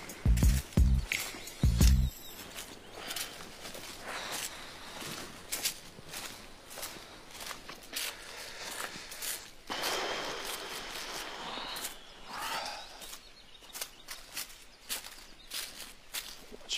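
A bass-heavy music beat for the first two seconds, then footsteps on a dry, leaf-covered dirt trail, with a longer patch of rustling noise about ten seconds in.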